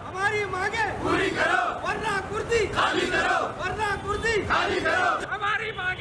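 A crowd of men chanting protest slogans in unison, loud shouted phrases repeated over and over.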